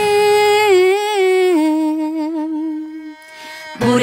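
Children's song: a lone voice holds a long, wavering sung note that steps down in pitch twice. The backing drops away about a second in. After a brief gap near the end, the band comes back in.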